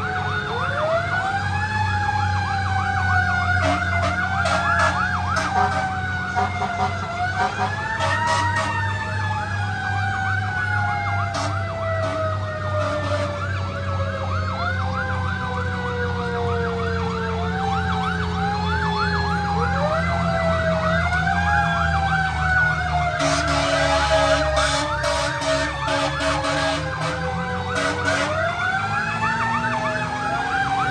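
A Federal Q mechanical siren on a fire engine, repeatedly wound up and left to coast down. Each rise is sharp and each fall is long and slow, every three to four seconds, with a second, wavering siren tone alongside and a few short blasts near the middle of the stretch.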